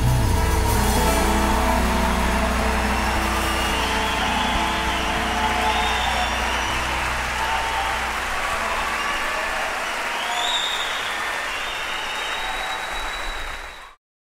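Theater audience applauding and cheering as the band's final chord rings out at the start, with a high whistle about ten seconds in. The applause slowly fades out just before the end.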